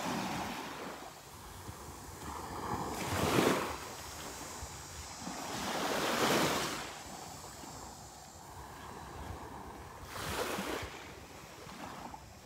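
Small Gulf of Mexico waves breaking and washing up on a sandy shore, swelling and fading three times at intervals of about three to four seconds, the first a little past three seconds in the loudest.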